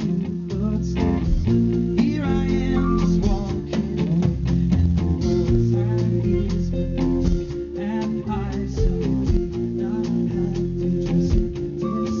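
Live rock music: a male singer over electric guitar, with bass and drums keeping a steady beat behind him.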